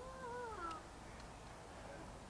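A single drawn-out cry, rising and then falling in pitch over about a second near the start, over a faint background hush.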